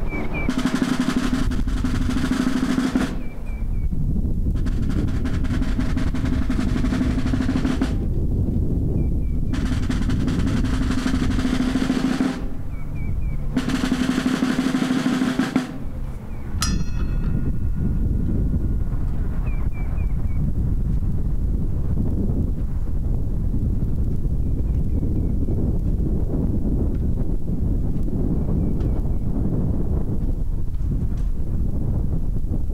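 Snare drum played in four sustained rolls of about three seconds each, with short breaks between them, over the first half. After that the drum stops, leaving a steady rumble of wind on the microphone.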